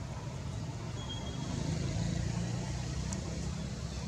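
Low engine rumble of a passing motor vehicle, swelling about halfway through and easing off again, with a faint short high chirp about a second in.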